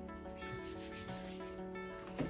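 A rough scraping, rubbing sound from about half a second in, lasting a little over half a second, over background music with sustained notes.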